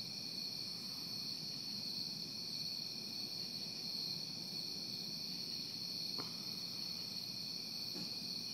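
Steady, unbroken chorus of night insects, crickets trilling high and continuously, with one faint brief tick about six seconds in.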